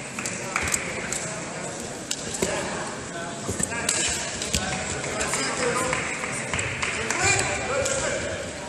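Indistinct voices calling out in a large sports hall, with scattered sharp slaps and thuds of two wrestlers hand-fighting and stepping on the mat.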